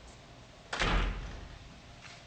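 A single heavy slam or thud about three-quarters of a second in, with a deep low end, fading out over about half a second.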